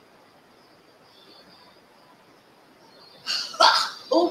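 About three seconds of quiet, then a woman's loud, sharp, breathy exhale as she reacts to the strength of a sip of 100-proof bourbon.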